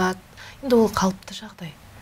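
Speech only: a woman talking in short phrases with brief pauses.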